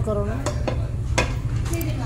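A few sharp clinks of utensils against a stainless-steel hot pot, spaced unevenly, over a steady low hum.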